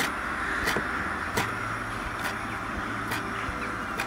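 Chef's knife chopping fresh green herbs on a wooden cutting board: a sharp knock of the blade on the board about every second, around five strokes, over a steady background hum.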